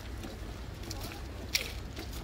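Footsteps of a small group walking on a paved path, over a steady low rumble, with one sharp click about one and a half seconds in.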